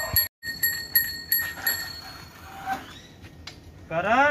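Bicycle bell rung rapidly with the thumb, about four or five rings a second, stopping about halfway through.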